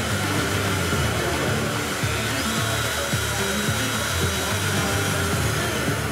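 Compact PWM-controllable CNC router motor switched on with a push button, starting abruptly and running at steady speed with a high whine.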